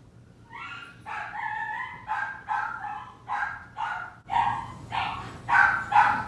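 A small dog barking in a rapid run of high-pitched yips, about two or three a second, getting louder from about four seconds in.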